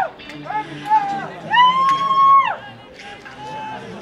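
A high-pitched voice in long drawn-out held notes, the longest about a second, over a low murmur of crowd chatter.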